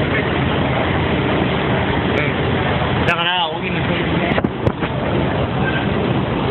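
Busy street ambience: many voices talking at once over steady traffic and engine noise. About three seconds in there is a brief wavering pitched sound, followed by a couple of sharp clicks.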